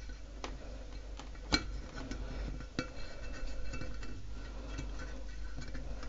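Thin dogwood twigs clicking and scraping against a glass vase as they are fed in and bent around its inside; a few light clicks, the sharpest about one and a half seconds in.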